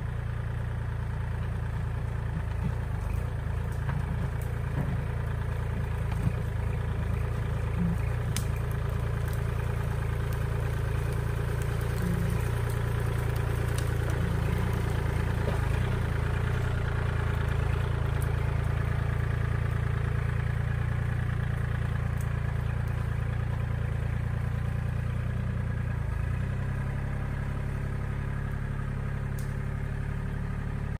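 Kubota L2501 compact tractor's three-cylinder diesel engine running steadily while the front loader pushes brush and dirt, with a few sharp cracks over it. Its note shifts slightly near the end.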